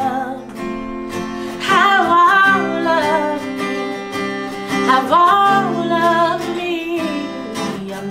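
Acoustic guitar strumming chords under a woman singing a slow worship song, her voice sliding and wavering through long held notes.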